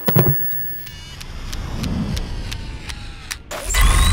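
End-of-video sound-effects sting: a sharp hit, then a string of quick clicks over a swelling rush, ending in a louder whoosh-like burst near the end.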